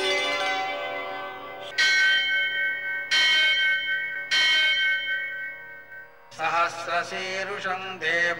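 A temple bell struck three times, a little over a second apart, each strike ringing on, over the fading tail of sustained music. Near the end a voice begins chanting.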